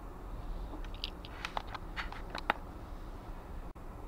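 Low, steady rumble of a car driving slowly, picked up by a dashcam inside the cabin, with a few faint, irregular clicks around the middle. The sound cuts out for an instant near the end.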